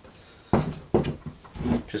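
Two dull knocks about half a second apart, from the plastic brush-cutter handle and clamp being handled against the shaft and the wooden bench during assembly.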